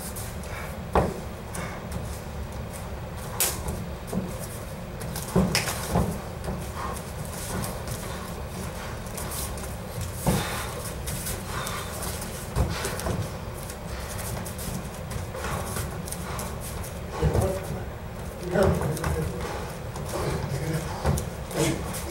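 Light bare-knuckle sparring and clinch work on foam mats: irregular, sharp slaps and thuds of strikes, hand-fighting and bare feet on the mats, with the fighters' breathing.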